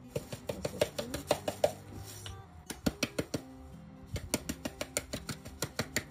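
Quick, irregular clicks and clinks of a metal spoon and spice containers against a glass bowl and jar while raw shrimp are seasoned, over steady background music.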